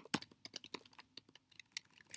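Typing on a computer keyboard: a quick, uneven run of light key clicks.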